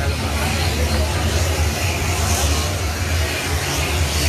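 A man's voice speaking through a handheld microphone, nearly buried under a loud, steady low rumble and hiss.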